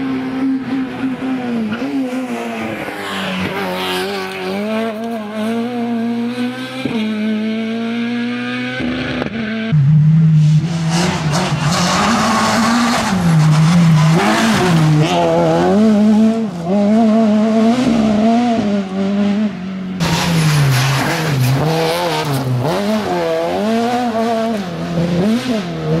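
Renault Clio II rally car's engine revving hard on a stage: for the first stretch the pitch climbs in steps with each upshift, then after two cuts it swings rapidly up and down with the throttle as the car is driven through corners.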